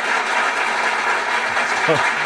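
A steady hiss of background noise fills a pause in speech, with no distinct event in it. A man says a short "so" at the very end.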